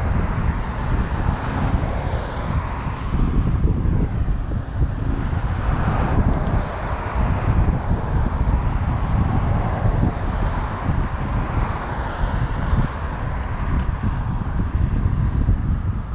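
Wind buffeting the microphone of a camera on a moving bicycle, a steady low rushing, with cars passing on the adjacent highway in swells of road noise a few times.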